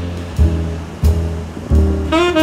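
Ocean surf washing onto a beach, a steady rush of breaking waves, under smooth jazz: a few low bass notes sound in a gap in the saxophone line, which comes back in at the very end.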